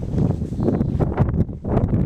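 Wind buffeting the camcorder microphone: a loud, gusting rumble with no steady tone.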